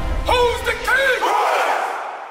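A group of men shouting together in a few long yells that rise and fall in pitch, over music whose beat drops out about halfway through, leaving crowd noise that fades away.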